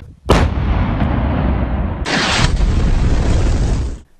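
Two bomb explosions. The first blast comes sharply about a third of a second in and dies away in a long low rumble. A second, brighter blast about two seconds in rumbles on until the end.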